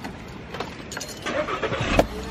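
A car running, a steady engine-and-road noise with a few light clicks.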